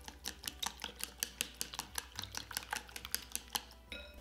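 Wooden chopsticks beating a liquid egg mixture in a ceramic bowl, clicking rapidly against the bowl several times a second. The clicks stop just before the end.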